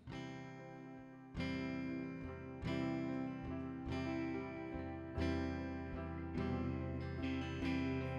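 Praise band's slow instrumental intro to a worship song: guitar chords struck about once every second and a quarter and left to ring. It starts quiet and grows fuller and louder, with more low end, about a second and a half in.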